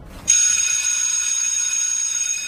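Electric school bell ringing with a steady, bright, high ring that starts a moment in and holds for about two seconds.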